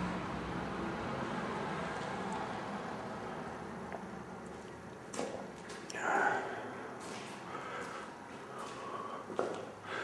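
Quiet indoor room tone with faint camera-handling rustle and clicks as the camera is moved, and a short breath-like sound about six seconds in.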